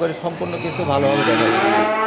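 A cow mooing: one long call starting about half a second in.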